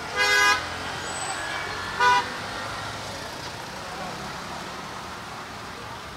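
A vehicle horn honks twice on a busy street: a short toot right at the start and a shorter one about two seconds in. Steady traffic noise runs underneath.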